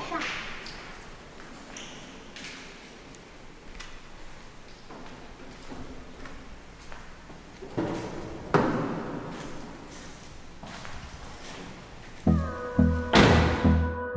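A car door being opened and then shut with a couple of thumps about two-thirds of the way in, after a stretch of sparse light footsteps. A music track with a steady beat comes in near the end.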